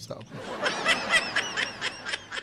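A burst of high-pitched laughter, rising and falling in pitch, starting about half a second in.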